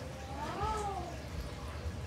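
A single short call that rises and then falls in pitch over most of a second, like a cat's meow, over a steady low hum.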